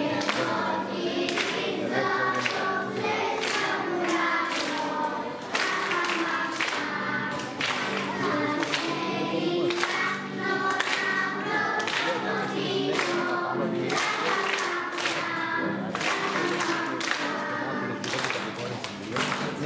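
A choir singing a song over music, with a steady beat of sharp strikes.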